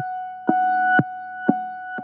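Electronic warning-screen music: one steady synthesized tone held throughout, under a sharp beat that hits twice a second.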